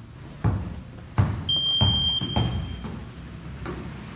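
Dull thuds of a basketball being bounced and players' feet landing on the floor, four strong ones in the first two and a half seconds. A steady high-pitched beep starts about a second and a half in and lasts over a second.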